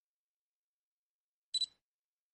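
A brief high-pitched double click with a short ring, about one and a half seconds in, in otherwise near silence.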